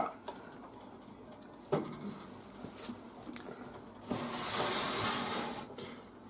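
A metal oven tray knocks once and then slides out along its runners with a scraping, hissing noise for nearly two seconds in the second half. The tray carries a glass baking dish standing in a hot water bath.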